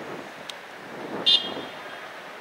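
Outdoor street noise, a steady hiss of distant traffic and wind, with one brief high-pitched tone a little past a second in.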